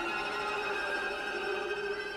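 Background classical string music, here a soft sustained chord of held notes.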